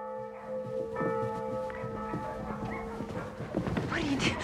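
A church bell struck at the start and again about a second in, its tones ringing on for about three seconds before fading, with scattered knocks underneath.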